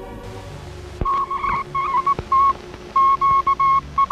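Morse-code-style radio telegraph beeping: a steady high tone keyed on and off in irregular short and long beeps, starting about a second in. Two sharp clicks come in with the beeps.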